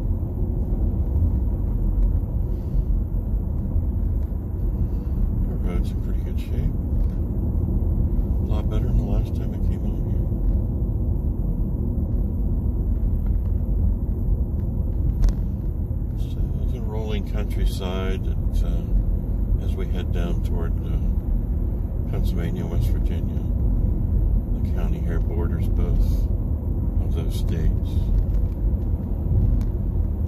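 Steady low rumble of road noise inside a moving car's cabin while it drives along at an even speed.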